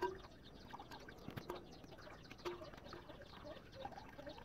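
Faint outdoor background with birds chirping, and a few soft clicks and light scrapes of a metal spoon working liquid through a small mesh strainer over a bucket, with one sharper knock about a second in.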